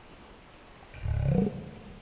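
A short, deep groan of about half a second, about a second in, falling in pitch as it goes.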